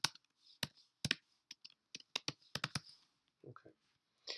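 Typing on a computer keyboard: a run of irregular, sharp key clicks as a short phrase is entered into a spreadsheet cell.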